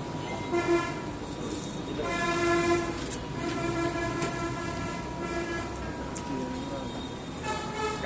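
Vehicle horn sounding in several blasts at one steady pitch, the longest over two seconds.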